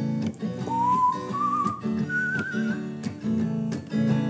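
A hollow-body guitar strummed in a steady upbeat folk rhythm, with a whistled melody over it. The whistle comes in about a second in as a note sliding upward, then two higher held notes with vibrato, and it stops before the end while the strumming goes on.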